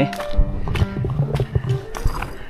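Background music with steady held notes, with a few faint low knocks under it.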